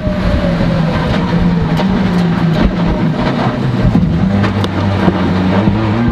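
Skoda World Rally Car's turbocharged four-cylinder engine running hard under load, heard from inside the cabin, its pitch held fairly steady and stepping down a little partway through. Frequent short knocks and rattles from the car run through it.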